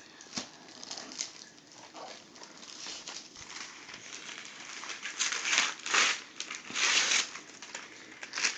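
Christmas wrapping paper being torn and crinkled by hand as a present is unwrapped, in a string of irregular rustling bursts that grow louder in the second half.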